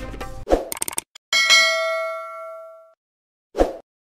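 Background music cuts off. Next come a sharp hit and a few quick clicks, then a bright bell-like ding that rings for about a second and a half as it fades. A short swish comes near the end: the sound effects of a news channel's end-card animation.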